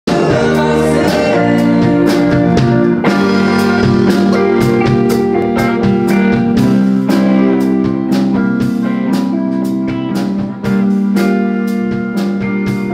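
A live rock band playing: guitar over a drum kit keeping a steady beat.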